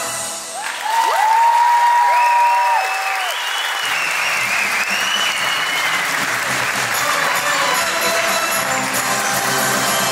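Theatre audience applauding and cheering after a song ends, with a few loud whistles about a second in; music comes back in underneath in the second half.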